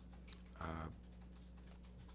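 A quiet pause in a man's speech, carried by a steady low hum. A short hesitant 'uh' comes about half a second in, with a few faint clicks just before it.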